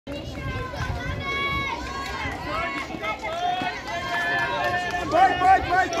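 Several voices shouting encouragement to a runner. In the last second the shouts turn loud and quick, about three a second.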